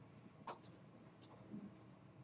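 Near silence: faint room tone with one short click about half a second in and a few soft ticks after it.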